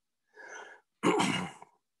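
A man takes a soft breath, then clears his throat once, a short rough sound.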